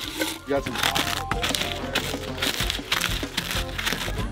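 Pizza-flavoured Pringles potato crisps crackling and crunching as they are crushed by hand into crumbs on a paper plate, over background music.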